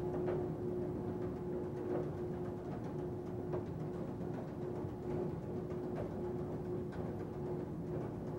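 Background drama score: a sustained low held note with soft, timpani-like drum strikes every second or two.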